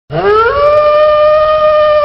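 A wolf howling: one long call that rises in pitch over the first half second and then holds steady.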